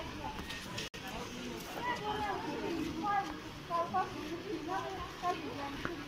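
Voices of people talking over a steady street hubbub, with a brief drop-out in the sound about a second in.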